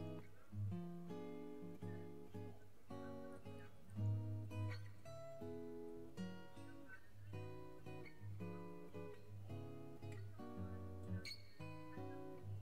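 Background music: an acoustic guitar playing a gentle melody, its notes changing about every half second.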